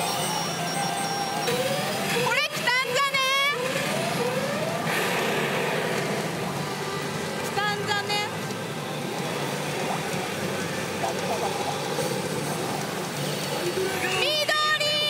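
Pachinko machine playing its electronic sound effects and game voice during a battle reach presentation, with sweeping tones about two and a half seconds in and again near eight seconds, over the steady din of a pachinko parlour.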